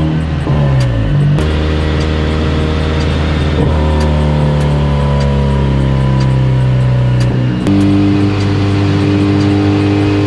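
Turbocharged K24 2.4-litre four-cylinder of a Honda Civic Si running on a chassis dyno. The revs fall away at the start, then hold at a steady pitch, and the note changes suddenly about three-quarters of the way through.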